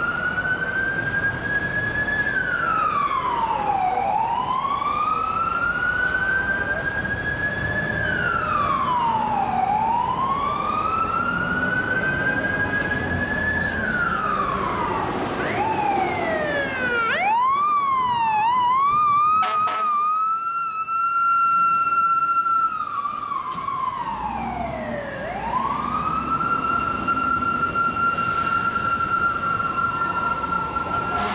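Emergency vehicle siren wailing, slow rising and falling sweeps about every six seconds, switching to a rapid yelp a little past the middle, then holding a steady high tone with one more dip and rise, over city traffic noise.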